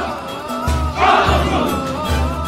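A large group of soldiers shouting in unison, a loud collective shout about a second in, over music with sustained tones and a pulsing bass.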